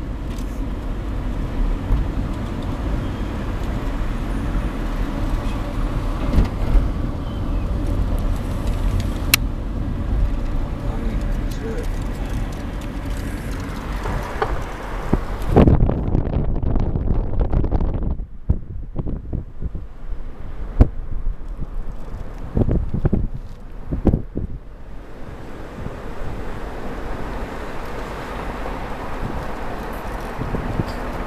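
A car driving, its engine and tyre rumble heard from inside the cabin, with a few sharp knocks. The sound turns duller for several seconds past the middle.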